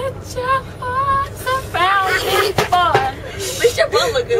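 A woman singing unaccompanied: a run of short held notes, then a wavering, sliding phrase, over the steady low rumble of a tour bus.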